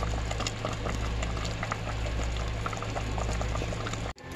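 A pot of chicken soup with vegetables at a steady boil: continuous bubbling with many small pops, over a steady low hum.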